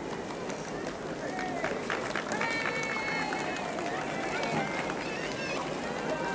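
Street crowd cheering and calling out, many indistinct voices overlapping.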